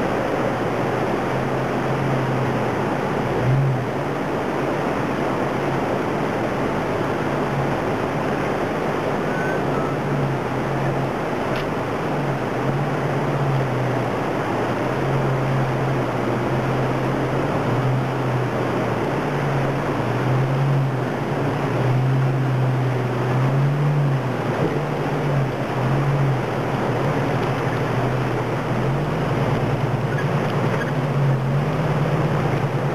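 Rushing creek water over rocks, with a rock-crawler buggy's engine running at low revs under it, rising and falling as the throttle is worked to crawl over boulders and into the creek.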